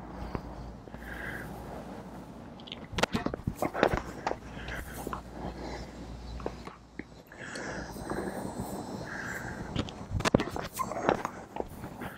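Sharp knocks of a tennis ball on a hard court and against a racket strung for a kick serve: a cluster of impacts about three seconds in and more near the end, as the ball is bounced and served at full speed.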